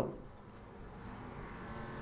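A quiet pause between spoken phrases: only faint steady background hum and room noise.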